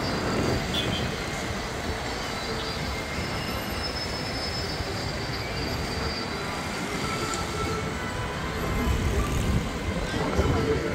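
A steady rumble of heavy vehicle traffic, with faint thin high squeals running over it.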